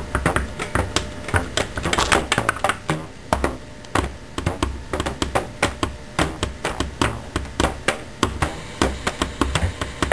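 A run of irregular sharp taps and clicks, several a second.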